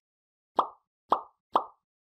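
Three short cartoon 'pop' sound effects, about half a second apart, the kind that accompany like, comment and share icons popping onto the screen.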